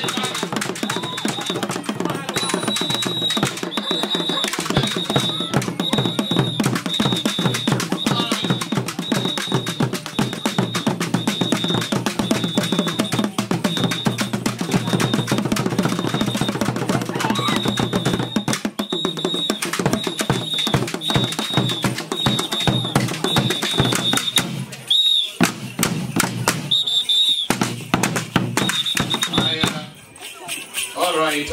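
Acholi traditional dance music: a tall wooden drum with a hide head beaten with a stick in a fast, dense rhythm, with the dancers' voices over it. A short high tone repeats steadily through most of it, and the drumming drops out briefly twice near the end.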